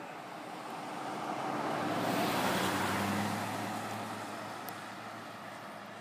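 A road vehicle driving past: a rush of tyre and engine noise with a low hum that swells, peaks about two to three seconds in, and fades away.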